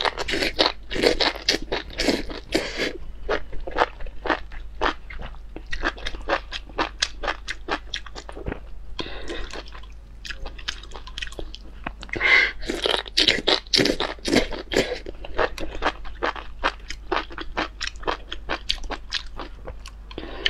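A person chewing a mouthful of spicy enoki mushrooms: a quick, continuous run of short chewing clicks.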